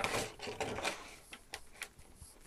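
Small wood-mounted rubber stamps clicking and knocking together as they are picked out and handled, with light rummaging. The knocks come thickest in the first second, then a few sharper single clicks.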